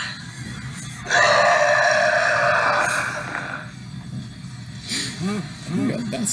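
A loud, drawn-out cartoon yell lasting about two and a half seconds, starting about a second in, voiced for a drawn monster. Brief low voices follow near the end.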